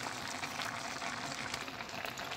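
Asparagus risotto simmering in a pan, with a soft, steady bubbling and faint crackle.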